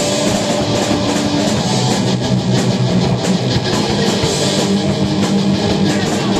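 A post-hardcore band playing live and loud: distorted electric guitars through a Peavey 6505 amp over a full drum kit, with steady cymbal hits.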